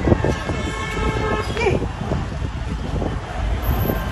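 A car horn sounding once for about a second, a steady held tone, over outdoor street noise and scattered voices.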